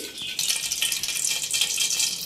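Steady crackling hiss of food sizzling in hot oil, starting about half a second in.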